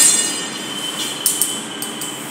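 Steel tape measure blade being pulled out and laid against the door: a loud metallic ring fades at the start, then a faint thin squeak about a second in and a couple of light clicks.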